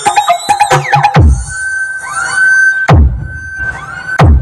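Loud electronic dance music on a truck-mounted mobile sound system's speaker stack. A fast clicking beat gives way about a second in to a deep bass hit that drops in pitch. A held high tone follows, then a second deep, falling bass hit near the end.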